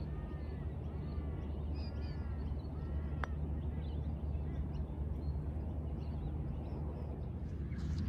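Birds calling repeatedly through the first half, with a single light click about three seconds in as the putter strikes the golf ball, all over a steady low background rumble.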